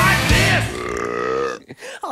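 The end of a rock song: the band plays its last few drum-driven beats with a voice over them, then one held chord sags slightly in pitch and dies away about three-quarters of the way through, leaving a brief near-silence.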